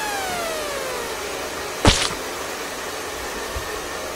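Handheld hair dryers blowing steadily on a plaster-bandage face cast. Over them a falling whistle-like sound effect drops in pitch through the first second, and a single sharp hit comes about two seconds in.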